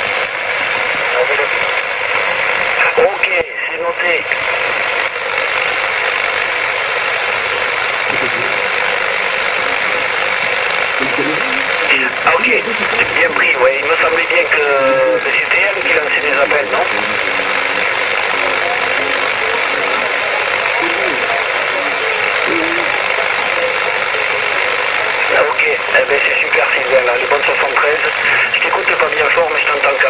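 CB radio receiver on channel 27 giving out a steady rush of static, with weak, garbled voices of distant stations breaking through now and then, most clearly around the middle and near the end.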